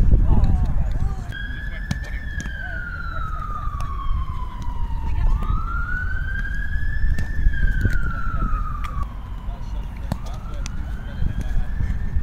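A siren wailing, starting about a second in and sliding slowly up and down in pitch, one rise and fall about every five seconds, over a steady low rumble, with a few sharp knocks.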